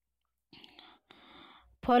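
Silence, then two faint breathy, whisper-like voice sounds about half a second apart, before normal speech starts near the end.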